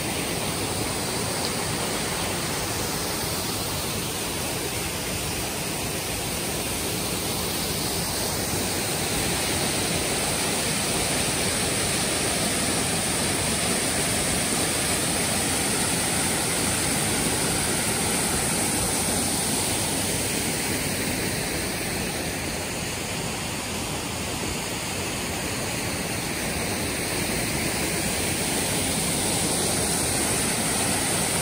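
Waterfall cascading over rocks into a pool: a steady rush of falling water, swelling a little in the middle and near the end.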